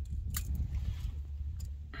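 Low, steady wind rumble on the microphone, with a few light clicks and taps as a steel tape measure is handled and set against the engine.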